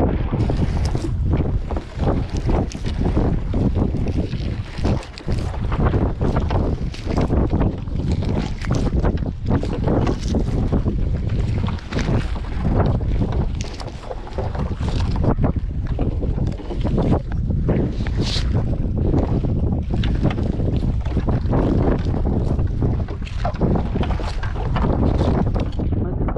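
Wind buffeting the microphone over the irregular rustle and slap of a wet nylon trammel net being hauled hand over hand over the boat's side.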